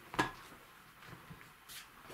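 A single sharp knock a moment in, followed by faint scuffing sounds of a person moving about.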